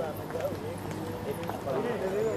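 Background voices of people talking at a distance, with faint scattered clicks.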